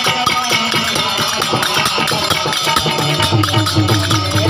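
Live traditional Gujarati Ramamandal folk-theatre music with a fast, steady percussion beat and melody.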